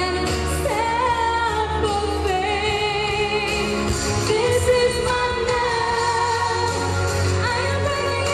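A young woman sings a pop ballad live into a handheld microphone over a backing track. She holds long notes that slide between pitches.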